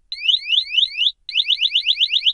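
PASS device on a Scott Air-Pak X3 SCBA sounding its full alarm: rising electronic chirps, about four a second, that speed up to about eight a second a little past one second in.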